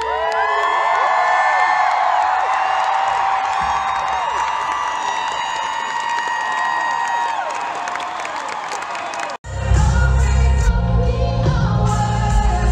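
Live arena pop music: a female singer holds long, gliding sung notes over the band while the crowd cheers and whoops. About nine and a half seconds in, the sound cuts off abruptly and switches to a different recording of the music with much heavier bass.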